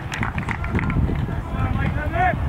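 Indistinct voices of players and spectators talking and calling, over a steady low rumble.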